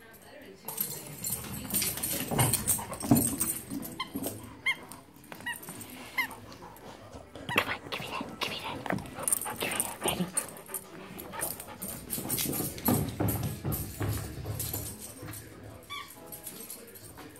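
A dog whining in a few short, high, rising notes, amid knocks and rustling as it plays fetch on carpet.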